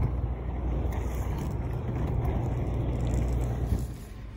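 FR2 inline skate wheels rolling over asphalt, a steady rumble with wind on the microphone, dropping away just before the end.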